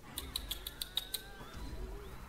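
A quick run of about seven light, sharp clicks, roughly six a second, over the first second, followed by a low rumble near the end.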